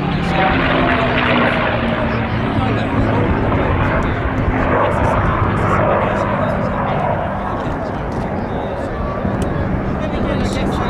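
P-51D Mustang's Packard Merlin V-12 engine running in a display flight, with its pitch falling over the first second or so as the fighter draws away. The sound then stays steady and eases off slightly toward the end.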